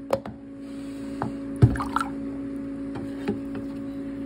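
Plastic collection cup knocking against a plastic tub as water is poured from the cup into it: a few sharp knocks with some splashing, the loudest knock about one and a half seconds in.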